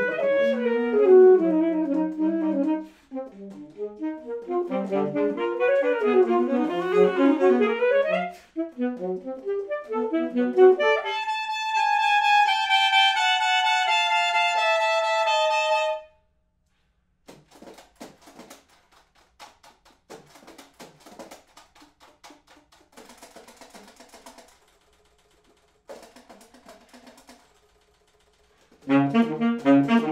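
Two alto saxophones playing a duet: quick interweaving lines, then about eleven seconds in a held chord that sinks slightly in pitch and breaks off at sixteen seconds. A quiet stretch of scattered short soft sounds follows, and both saxophones come back in loudly near the end.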